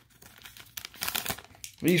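A torn-open baseball card pack's wrapper crinkling in scattered crackles as the stack of cards is slid out of it.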